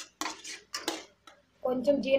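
Steel spoon scraping and stirring thick masala paste in a coated frying pan: three quick scrapes in the first second and a lighter one after.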